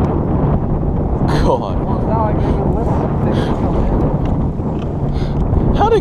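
Wind buffeting the microphone in a steady rush over a low, constant hum, with a few faint voice fragments about a second and a half in.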